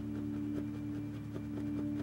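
Soft ambient background music with steady sustained tones. Faint, scattered light taps of a small brush dabbing paint onto the canvas are heard under it.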